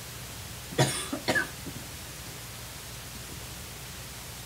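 A person coughing twice in quick succession about a second in, over a low steady room hum.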